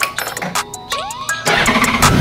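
Background music, then about three quarters of the way in a Honda Gold Wing's flat-six engine is cranked and starts, settling into a steady idle.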